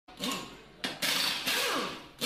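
Logo-intro sound effects: sudden noisy whooshes, one near the start and two in quick succession about a second in, each with a sliding pitch underneath.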